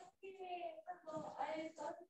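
A child's voice singing quietly in steady held notes, in two phrases with a short break just after the start.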